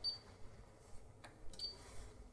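Front-panel buttons of a Siglent SDS1202X-E oscilloscope being pressed: a few faint clicks, two of them with a short high beep, one at the start and one about one and a half seconds in.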